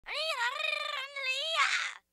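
A long, high-pitched cat-like meow in two parts: it rises at the start, holds, breaks off briefly about a second in, then carries on and fades.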